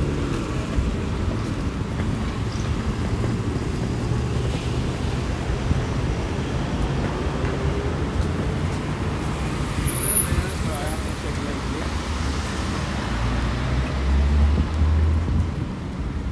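Road traffic: cars and a city bus running past, a steady low rumble that swells near the end as a heavier vehicle passes.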